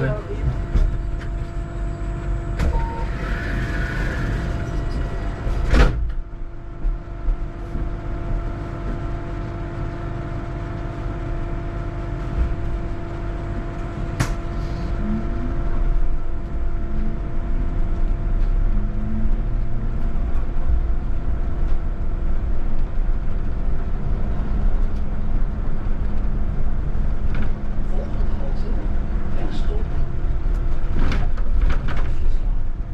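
Electric VDL Citea city bus driving, heard from inside: a constant low road and tyre rumble with a steady hum over it, and a sharp click about six seconds in and again midway.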